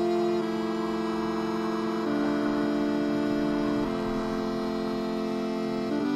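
Improvised synthesizer music played only on the white keys: long held notes, changing pitch about every two seconds.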